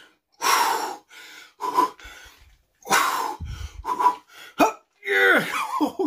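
A man's forceful exhales and short strained grunts, about one a second, from the effort of the last reps of a set of barbell reverse curls.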